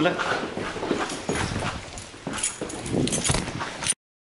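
Indistinct voices with a few knocks and handling noises, cutting off abruptly just before the end.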